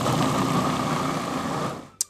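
Breville Sous Chef 12-cup food processor running at full speed, its blade churning a thick oat and banana batter: a loud, steady mechanical whir that stops just before the end.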